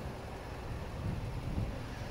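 Steady low rumble of wind buffeting the microphone, with faint outdoor background noise.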